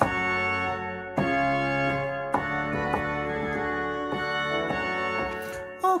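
Organteq 2 modelled pipe organ (Royal Chapel of Versailles preset) playing sustained chords on a newly loaded stop combination. The chords change about a second in and again past two seconds.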